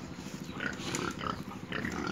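Pigs grunting.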